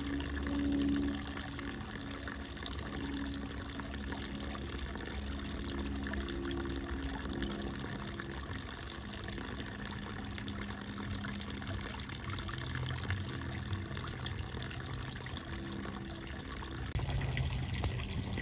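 Steady running water from the turtle pond, with a faint low hum coming and going underneath.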